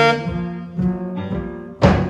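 Live jazz: a tenor saxophone solo over double bass, piano and drums. A saxophone note ends at the start, bass and piano fill a short gap, and the saxophone re-enters with a sharp, loud attack near the end.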